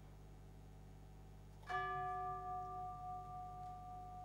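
A single strike on a bell-like metal percussion instrument a little under halfway through, leaving a clear ringing tone that dies away slowly, over a low steady hum.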